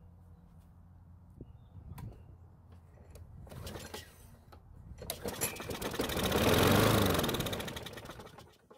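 Lawn mower's Briggs & Stratton engine, primed by fuel poured straight into the carburettor: about five seconds in it catches and runs for roughly three seconds, getting louder and then fading as it dies out on the primed fuel alone.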